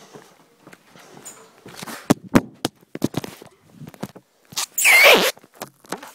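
Clear adhesive tape pulled off the roll: a few sharp clicks and crackles, then one loud ripping screech lasting about half a second near the end.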